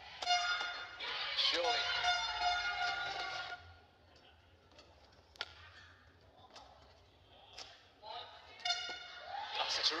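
A badminton smash strikes a shuttlecock to win the point, followed by about three seconds of loud, high-pitched shouting and cheering in a large hall. A few sharp taps follow, then more shouting near the end.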